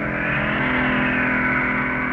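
Film soundtrack: a sustained drone of held, layered tones under a rushing whoosh that swells in the first second and slowly fades, a sound effect for missiles streaking through the sky.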